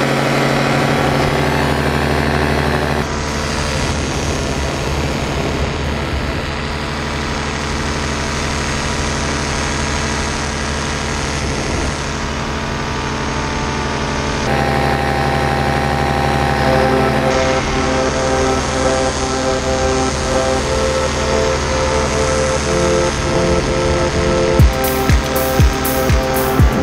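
Paramotor engine and propeller droning steadily in flight. Background music comes in over it from about halfway, with drum hits near the end.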